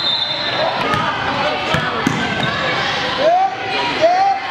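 Basketball dribbled and bouncing on a hardwood gym floor, several bounces at uneven intervals, among the voices of players and spectators.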